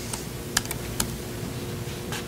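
A handful of separate keystrokes on a laptop keyboard, short sharp clicks spaced unevenly, most of them in the first second, as a name is typed into a form field.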